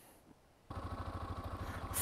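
Yamaha XT250's single-cylinder engine running steadily, with even firing pulses, coming in about two-thirds of a second in after a brief near silence.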